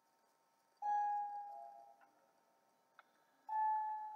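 A chime rings twice, about two and a half seconds apart: each time a bright struck tone that fades over about a second, with a second, slightly lower note coming in as it fades. A light click falls between the two rings.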